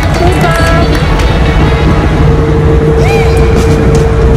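Heavy, steady low rumble of clothing rubbing against a phone microphone and wind on it while cycling, with music and a held note playing over it.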